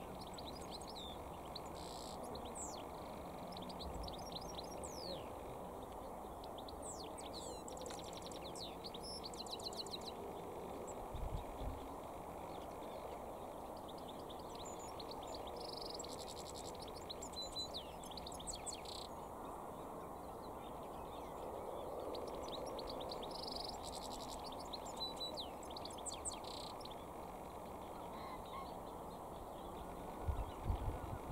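European goldfinch singing: several phrases of rapid, high twittering and trills, heard fairly faint over a steady low background noise, with one brief low thump about halfway through.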